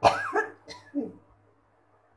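A person coughing: one sharp, loud cough followed by two or three smaller coughs or throat-clearing sounds within the next second.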